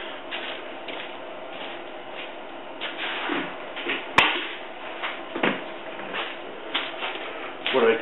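Off-camera handling noises as a plastic bucket is fetched: scattered light knocks and scrapes, with one sharp click about four seconds in.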